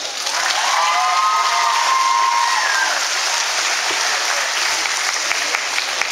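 Audience applauding in a gymnasium, with a voice cheering over the clapping in the first half.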